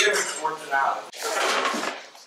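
Indistinct voices, then a noisy rush lasting most of a second near the end.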